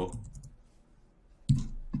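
A few light computer-keyboard keystrokes as code is typed, with a quiet gap in the middle and a sharper click about one and a half seconds in.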